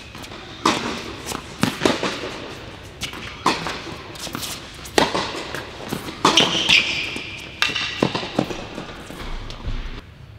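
Tennis rally on an indoor court: a series of sharp pops from racket strings striking the ball and the ball bouncing, about a dozen over ten seconds at an irregular rally pace, ringing in the large hall.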